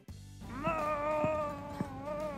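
One long whining, cat-like cry that rises and then slowly falls, followed by a shorter one near the end. A light, steady beat from background music runs under it.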